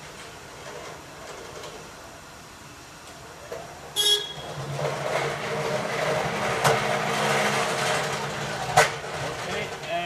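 Electric walkie pallet jack giving one short horn beep about four seconds in, then its drive motor humming steadily as it rolls closer. It ends in a sharp clunk near the end as it stops.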